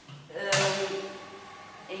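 A sharp click about half a second in as the power switch on a Shimpo electric potter's wheel is flipped, followed by a brief vocal sound.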